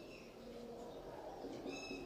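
Whiteboard marker squeaking against the board while writing: two short, high squeaks, one at the start and one near the end.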